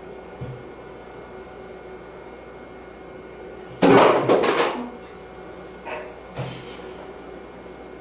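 A short, loud clatter lasting about a second, a little before the middle, with a few soft knocks before and after it, over a steady low room hum.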